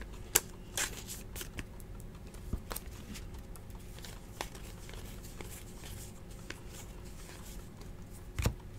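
Baseball trading cards being flipped and slid against each other in the hands, giving a scattering of light clicks and flicks, the sharpest about half a second in, over a low steady room hum.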